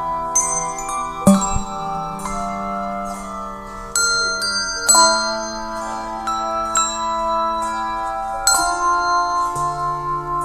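Handbell choir ringing a hymn arrangement: chords of handbells struck and left to ring, with fresh chords about a second in, at four and five seconds, and near the end.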